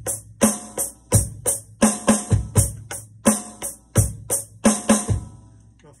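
Electronic drum kit played through its module: a groove of bass drum, snare and hi-hat with a fill of two right-hand strokes and a kick in quarter-note triplets. The playing stops a little after five seconds and the last hits ring out.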